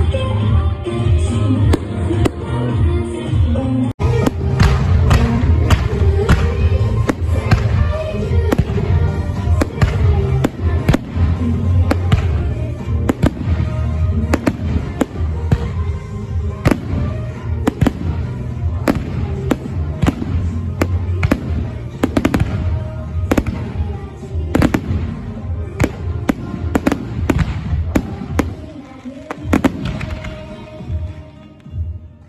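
Aerial fireworks bursting in a rapid series of sharp bangs and crackles over continuous music. The bangs come thickest through the middle and thin out near the end.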